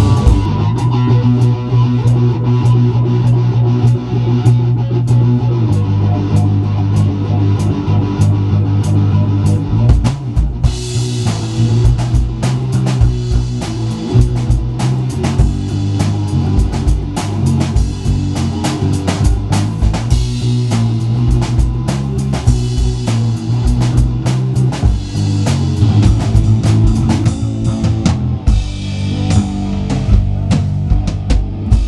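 Rock band playing live in a small rehearsal room: drum kit with steady hits, a heavy bass line and electric guitar. Near the end the music cuts to a different song.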